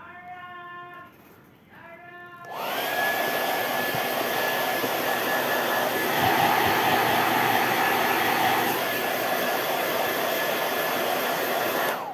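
Gaabor GHD N700A hair dryer switched on about two and a half seconds in. Its motor whine rises quickly to a steady high pitch over a loud rush of blown air, and it runs evenly until it stops at the very end.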